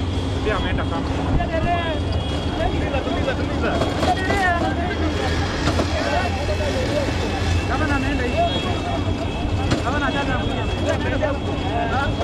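Steady vehicle rumble from a moving vehicle, with many overlapping voices shouting and cheering over it.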